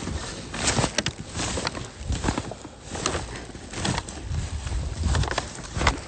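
Footsteps crunching through deep snow in uneven steps, with a plastic bag and a paper bag rustling against the handheld phone.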